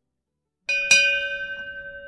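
A bell-like chime struck twice in quick succession, its tones ringing on and slowly fading.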